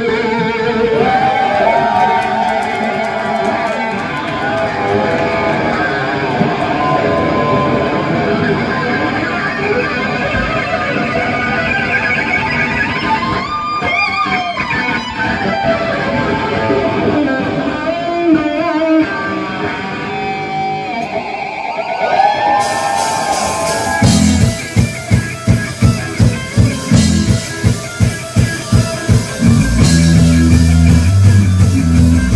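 Live heavy metal band: electric guitars with gliding, bent lead lines over bass and drums. About 24 seconds in it changes to a louder riff, chopped into even stabs nearly three times a second.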